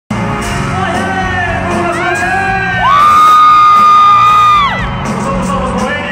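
Live pop concert music with the crowd cheering. About three seconds in a loud high voice whoops upward, holds one note for nearly two seconds, then drops away.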